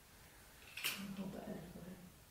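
Quiet room tone broken about a second in by one brief, soft murmured utterance from a person, opening with a sharp hissing consonant and trailing off in a short low hum.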